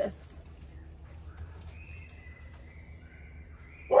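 Quiet outdoor ambience with a steady low rumble and a faint, thin bird call. The call starts about a second and a half in and is held, wavering slightly in pitch, to near the end.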